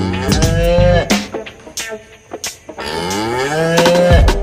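Cattle in their stalls mooing: two long, loud moos, the first in the first second and the second starting near the end.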